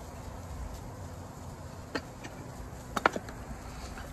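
Steady low background rumble with a single light click about two seconds in and a short cluster of clicks around three seconds in, from containers being handled on an outdoor prep table.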